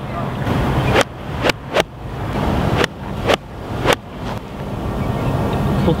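Wind rushing over the microphone, with several sharp knocks in the first four seconds.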